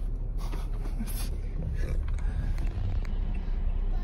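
Cabin noise inside a moving minivan: a steady low rumble of engine and tyres on the road.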